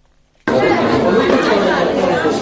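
Chatter of a crowd, many voices talking at once, cutting in suddenly about half a second in after a brief near-silence.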